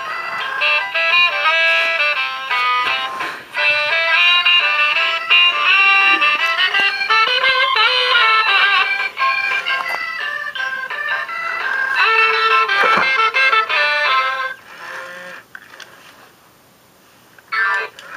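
Battery-operated animated saxophone-playing Santa figure playing a tinny electronic tune through its small speaker. The tune stops about fourteen seconds in. The figure has been acting erratically, which the owner puts down to its circuit board going bad.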